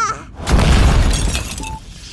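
Cartoon sound effect of a punch smashing an electronic wall control panel: a sudden loud crash about half a second in, with breaking and crackling that dies away. A short electronic beep follows near the end.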